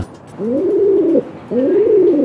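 Pigeon cooing: two long coos, each rising and then falling in pitch.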